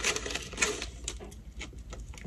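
Chewing a mouthful of burrito close to the microphone: a quick run of small wet clicks and smacks.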